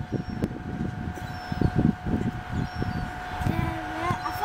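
Outdoor ambience: irregular wind rumble on the microphone over a steady faint background hum.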